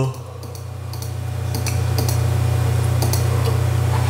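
Steady low electrical hum that drops briefly at the start and swells back up within about a second, with a few faint clicks scattered through it.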